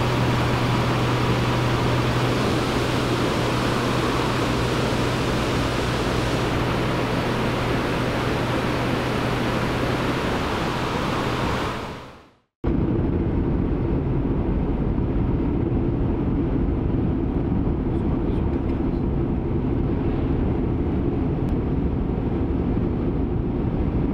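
Steady vehicle noise in two parts: first an even rushing noise over a constant low hum, fading out about halfway through; after a brief silence, the steady, duller drone of a car driving on the road.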